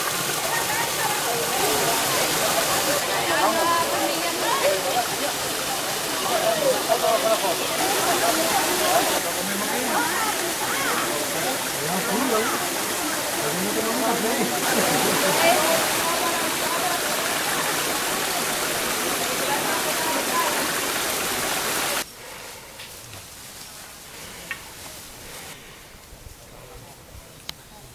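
Small waterfall and rocky stream rushing steadily, with people's voices over the water. The water sound stops abruptly near the end, leaving quieter ambience with a few faint clicks.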